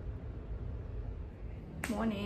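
Faint room tone with a low hum, then a single short click near the end as a woman's voice begins.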